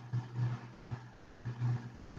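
Low hum that starts and stops in short stretches about every half second, over faint background hiss.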